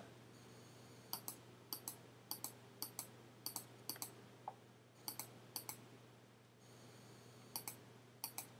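Faint computer mouse clicks, each a quick press-and-release pair, about two a second as pen-tool anchor points are set one after another. There is a pause of about a second and a half near the end before two more. A faint steady low hum lies underneath.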